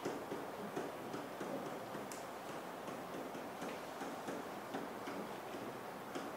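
Faint, irregular light ticks and taps of a pen on an interactive whiteboard as numbers are written, over quiet room noise.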